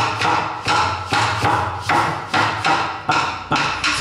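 Canoíta, the small wooden percussion idiophone of the Congo de Villa Mella tradition, struck in a steady pattern of sharp wooden knocks, about two a second.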